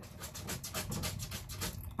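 Wooden craft stick stirring and scraping epoxy in a small paper cup, a quick run of scrapes that stops just before the end.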